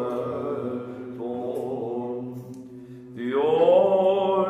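Byzantine chant in the plagal fourth mode: a male cantor sings a melismatic line over a steady held drone (ison) from two men. The voice fades low and quiet, then comes back in strongly with a rising phrase about three seconds in.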